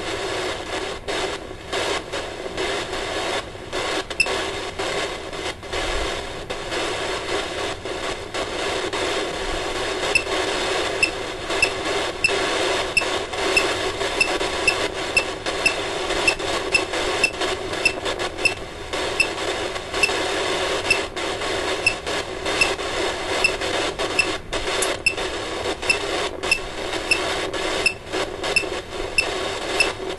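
Ghost-hunting phone app playing a steady hiss of radio-like static, joined about ten seconds in by regular short high pips, a little faster than one a second.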